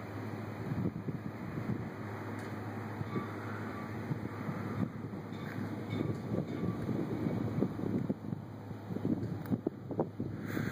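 Wind buffeting the phone's microphone, a low rumble that swells and fades in uneven gusts.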